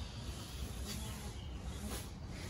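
Steady background hiss with a low rumble and no distinct event.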